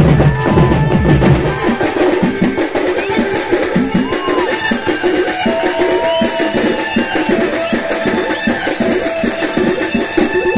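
Live drummers playing fast, dense rhythmic beats on barrel drums, loud and continuous.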